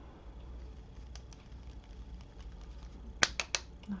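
Makeup brush tapped three times in quick succession against a powder foundation container, sharp clicks near the end, knocking excess powder off the bristles. A few faint clicks come earlier as the brush works in the powder.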